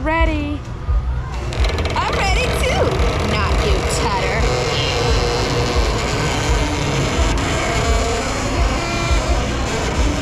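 Carousel music comes in about a second and a half in as the ride starts turning, over a low rumble, with voices around it.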